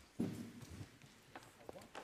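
Faint room sound: quiet voices in the room, with a few scattered knocks and clicks.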